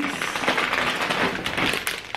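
Plastic snack packaging crinkling and rustling as it is handled, with a dense run of small crackles.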